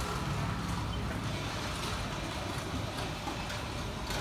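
Steady street traffic noise: motorbike and car engines running and passing below, blended into an even hum with no single vehicle standing out.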